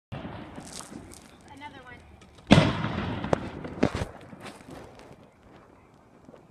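Fireworks going off: a loud bang about two and a half seconds in, followed by several sharp cracks over the next second and a half.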